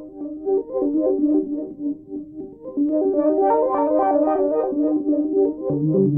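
Pioneer Toraiz AS-1 monophonic analog synthesizer playing a fast repeating run of notes. The tone grows brighter and louder about three seconds in, and lower notes come in near the end.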